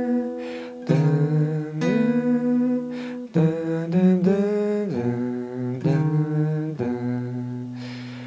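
Steel-string acoustic guitar with a capo, fingerpicked, playing a slow single-note melody line. A new note is plucked about every second, a few slide up into pitch, and each rings on until the next. The last note fades out near the end.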